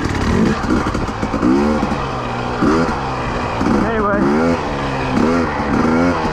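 Husqvarna TE300i's 300 cc fuel-injected two-stroke single running at low speed, revving up and falling back in short throttle blips about once a second.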